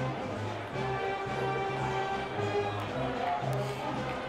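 Music playing, with a pulsing bass line under held notes.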